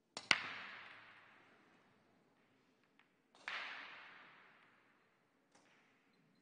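A pool cue striking the cue ball: a sharp clack a fraction of a second in that rings out over about two seconds, then a second knock with a similar fading tail about three and a half seconds in, and a few faint ticks near the end.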